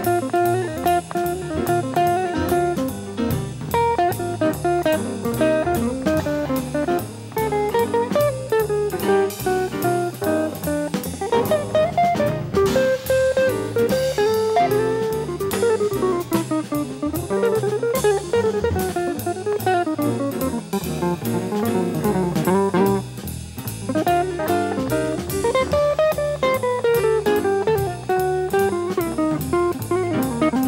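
Small jazz combo playing live, with electric guitar prominent over bass and a drum kit keeping a steady cymbal beat.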